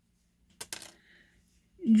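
A quick run of three or four light clicks about half a second in, with a short ringing after: small hard objects knocking together.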